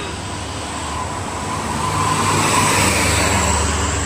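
A vehicle passing on the road, its engine and tyre noise swelling as it approaches, over a steady low engine hum.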